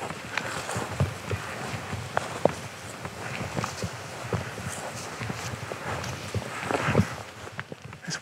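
Footsteps of people walking over grass: an uneven run of soft steps with some rustling.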